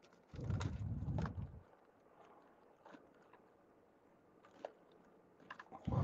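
Faint rummaging through items in an overhead cab compartment: a second-long run of soft bumps and rattling clicks near the start, a few small ticks, then more handling noise right at the end.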